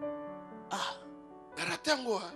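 Soft, held keyboard chords of background church music, with a short breathy throat-clearing or cough sound a little less than a second in and another short vocal sound near the end.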